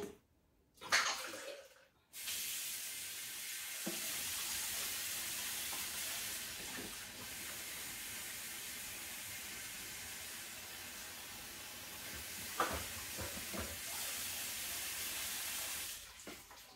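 Kitchen sink tap turned on about two seconds in and running steadily into the sink while dishes are washed, with a few short clinks of dishes against each other; the water stops near the end.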